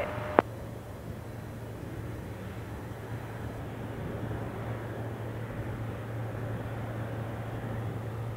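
Boeing 777-300ER's GE90 jet engines at taxi power, heard from across the airfield as a steady, even rush of noise over a low hum that slowly grows a little louder. A short click of the tower radio cutting off comes about half a second in.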